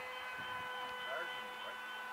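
Steady electronic beeping tone at one held pitch with overtones, which those present take for a radio-control transmitter left switched on nearby.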